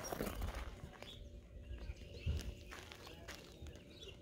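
Faint scuffing of shoes shifting on gravel, with a few soft knocks scattered through.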